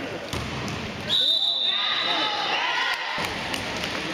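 A basketball bouncing on a gym court amid the shuffle of play, with spectators' voices in the hall. About a second in, a high steady tone starts suddenly and holds for over a second, the loudest sound here.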